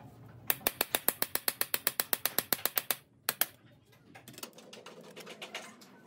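Ball end of a glass cutter tapping rapidly against a scored sheet of glass, a fast even run of sharp clicks, about ten a second for some two and a half seconds, then two more taps. Tapping like this opens the score line so the cut piece breaks away cleanly.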